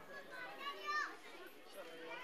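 Faint background chatter of several people's voices, clearest about a second in.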